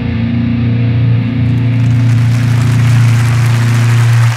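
Electric-guitar rock intro music ending on a long-held low chord, with audience applause fading in underneath from about a second and a half in.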